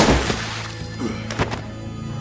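Cartoon sound effects of a body crashing down onto a floor: a heavy thud at the start, then two sharper knocks about a second in, over background music with a low drone.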